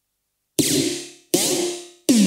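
Intro of an electronic pop track: about half a second of silence, then two short, bright electronic stabs in quick succession, each starting sharply and fading away, with falling tones inside them.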